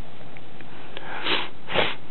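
Two short breaths drawn through the nose close to the microphone, about half a second apart near the end, over a steady background hiss.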